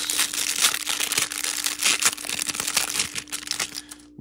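Clear plastic wrapper of a trading-card pack crinkling and crackling as it is torn open and pulled off the stack of cards; the crackling stops just before the end.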